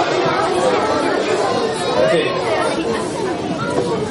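A room full of children chattering, many voices talking over one another at once.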